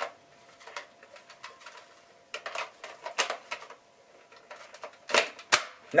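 Plastic clicking and rattling of a Nerf Elite foam-dart blaster being handled and fitted together, with a cluster of clicks in the middle and two sharper clicks near the end.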